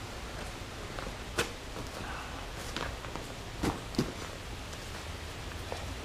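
Nylon webbing straps being pulled tight through the plastic buckles of an Ortlieb handlebar pack: light handling sounds with about four short sharp clicks, over a steady hiss.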